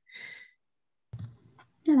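A short breathy exhale, then a pause broken by a faint click about a second in; a woman starts to speak right at the end.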